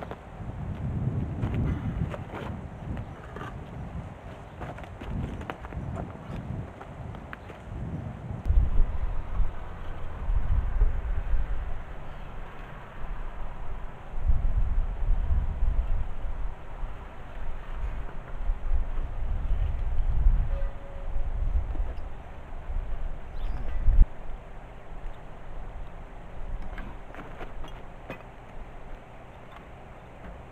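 Gusty wind rumbling on the microphone, rising and falling irregularly, with scattered light clicks and knocks from hand work at the IBC tank's outlet fitting and one sharper knock late on.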